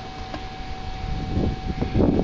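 Low rumbling outdoor background noise with a faint steady high tone running through it; louder bursts of noise come in the second half.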